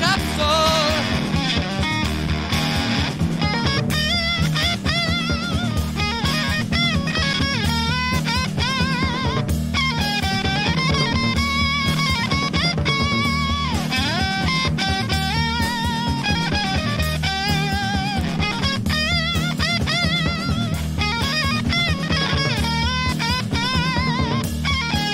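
Instrumental break of a 1969 psychedelic rock song: an electric lead guitar plays wavering, bending notes over bass guitar and a steady drum-kit beat.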